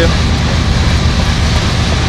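Freight train of boxcars rolling past, a steady rumbling noise of the cars going by on the rails.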